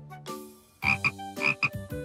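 Frog croak sound effect, two short double-pulsed 'ribbit' calls about a second apart, over soft background music.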